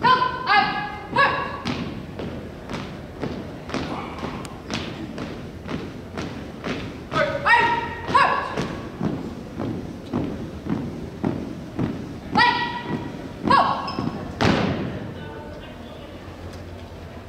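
A drill team's shoes striking a hardwood gym floor in step, about two steps a second, with a few loud shouted drill commands. A final heavy stomp near the end brings the steps to a halt.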